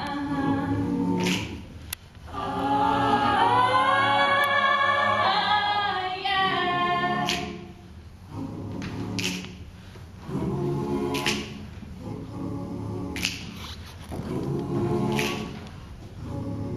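An a cappella choir sings a slow pop song in layered chords, with a solo voice gliding high above them in the first half. A crisp, snare-like hit marks the beat about every two seconds.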